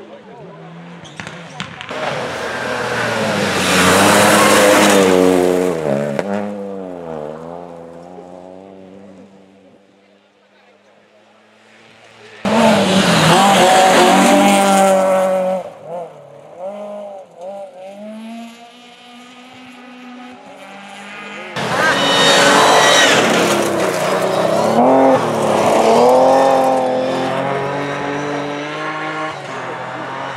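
Rally cars passing one after another on a gravel special stage, three in turn. Each engine revs hard through the corner, its pitch climbing and dropping with the gear changes, then falls away as the car leaves. The second pass starts abruptly.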